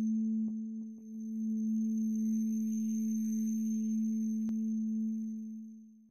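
A steady electronic drone tone on one low pitch, with a fainter tone an octave above. It dips briefly about a second in and fades out near the end, with a few faint clicks over it.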